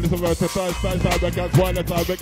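Grime MC rapping fast into a microphone in short, quick syllables over a grime instrumental with a deep, steady bass.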